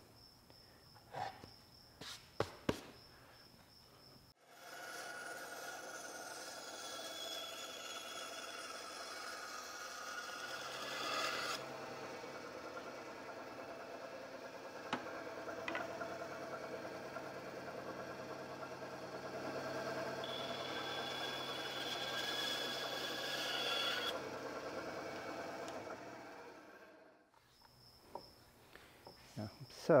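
Bandsaw running and cutting curves in a plywood seat piece: a steady motor hum under a shifting cutting noise. It starts about four seconds in and stops a few seconds before the end. Before it there are a few light clicks.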